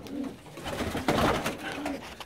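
Domestic pigeons cooing in short, low arching calls, with a brief rustling burst about a second in.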